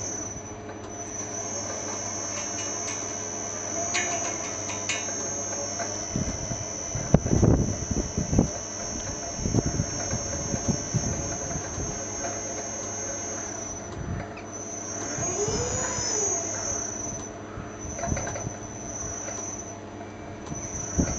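A steady high-pitched insect trill, breaking off briefly a few times near the end, with a few low thumps about seven to eight seconds in.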